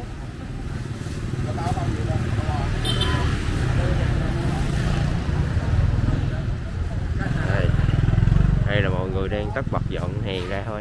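Motorbike engine running close by, a steady low rumble that grows louder toward the end, with people talking in the background.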